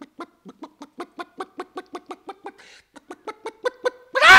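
An actor stammering a long, rapid run of short 'ko-ko-ko' syllables, about five a second, with a brief break near the middle. He is stuck on the first syllable of 'коктейль' (cocktail), and the stutter comes out sounding like a hen clucking.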